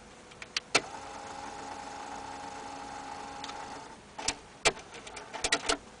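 Cassette mechanism of a BMW's Philips 4:3 navigation/radio unit working: a couple of clicks, a small motor whirring steadily for about three seconds, then a quick run of mechanical clicks and clacks as it completes its cycle.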